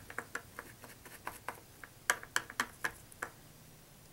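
Faint, irregular clicks and taps as a paintbrush dabs gesso onto a small metal filigree embellishment. The taps come a little closer together and louder in the second half.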